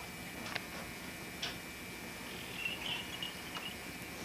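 Quiet room tone under steady tape hiss and hum, broken by a few faint, irregular clicks and a brief faint high squeak a little past halfway.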